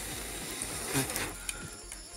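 Wood fire crackling with scattered sharp pops under a cooking pot, with a rush of noise over the first second and a brief voice sound about a second in.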